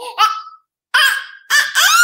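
A toddler's high-pitched squeals: two short ones, then a longer one that rises and holds near the end.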